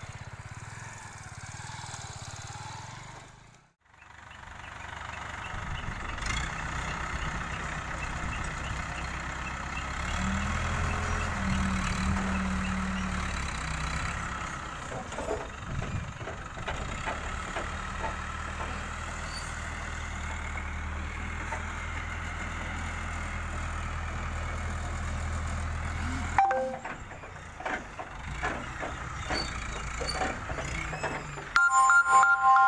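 Diesel engine of an ACE mobile crane running and working harder as it hoists timber logs, its note rising about ten seconds in. Near the end the engine sound stops and a loud thump is followed by lighter knocks.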